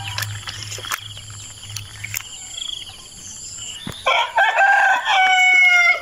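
A rooster crowing once, about four seconds in, a loud call of about two seconds in two parts, the second part held and falling slightly at the end. Before it, a faint steady high trill runs underneath.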